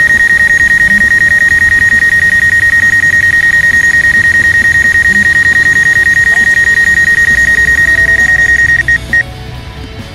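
Rapid, steady high-pitched beeping of the DJI Mavic Pro's obstacle-proximity warning, sounding because the drone is hovering about five feet from an obstacle as it lands. It stops about nine seconds in, with a couple of last beeps.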